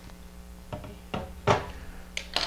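A few wooden knocks as a long bubble level is set down on a folding table, the loudest about one and a half seconds in, over a faint steady hum.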